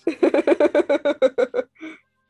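A person laughing: a quick run of about a dozen short, breathy ha's, about eight a second, that dies away near the end.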